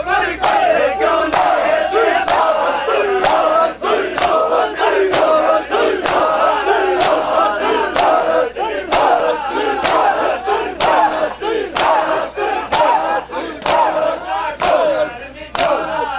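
Matam: a crowd of mourners beating their chests with open hands in a steady rhythm, about two slaps a second, under a crowd of men's voices calling out together.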